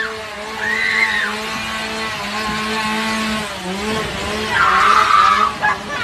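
Women screaming while riding in a dark-ride car, with short screams near the start and a longer, louder one about four and a half seconds in. A steady low hum runs underneath.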